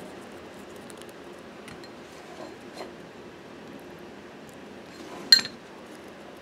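Faint handling sounds of a die-cut paper doily being turned over in the fingers: a few light scattered ticks, and one sharp click about five seconds in.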